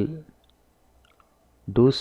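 A few faint computer mouse clicks in a quiet pause, between a man's speech at the start and again near the end.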